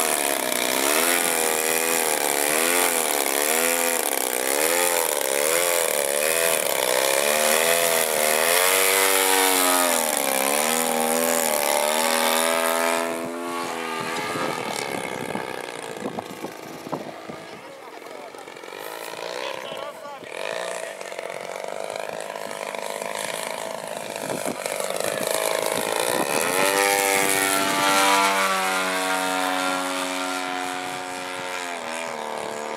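Propeller of an Extra 330SC radio-controlled aerobatic model plane, its pitch swinging up and down quickly as the throttle is worked while it hovers nose-up near the ground. About halfway through it grows fainter as the plane flies high, then louder and steadier again near the end.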